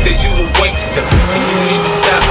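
A car's tyres squealing as it drifts, with a long squeal in the second half, under a hip-hop music track with a steady beat.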